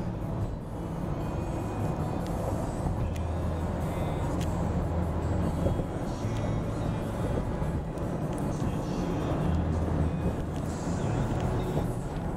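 Steady road and engine noise inside a car's cabin while driving on a highway, with music playing along with it.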